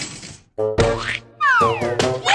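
Cartoon sound effects with children's show music: after a brief dip almost to silence, a short musical sting, then several tones sliding quickly downward in pitch near the end.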